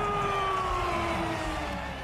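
Ring announcer holding the last syllable of "Tszyu" as one long drawn-out note that falls slowly in pitch and fades away near the end, over crowd cheering.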